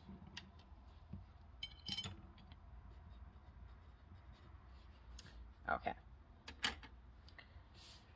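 Faint scratching and light taps of a pencil writing labels on paper chromatography strips, with a sharper scrape about two seconds in.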